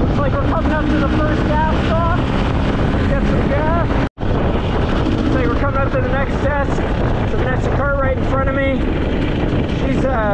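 Dirt bike engine running at a steady road pace, its pitch wavering with the throttle, with wind noise on the helmet-camera microphone. The sound cuts out abruptly for an instant about four seconds in.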